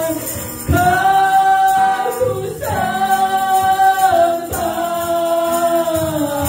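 A woman singing a slow worship song into a microphone with strummed acoustic guitar, holding three long notes in turn.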